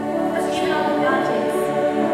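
Combined high school choir singing held chords in many voices, growing slightly louder.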